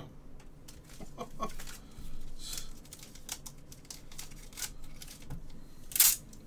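Light irregular clicks and taps of a plastic one-touch card holder being handled, with a louder sharp click near the end.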